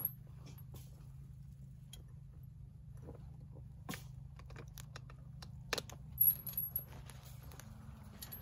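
Steel chain on a Texas Fence Fixer clinking and rattling in scattered sharp clicks as the tool's arms are drawn together and the chain is hooked to hold the barbed wire tensioned. A faint low hum runs underneath.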